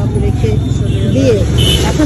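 People talking over a steady low rumble of street traffic.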